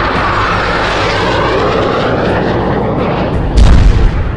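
A jet aircraft's engine noise as it passes, falling slowly in pitch, then a loud low boom near the end.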